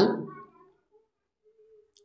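A man's voice trailing off at the end of a spoken phrase in the first half second, then near silence.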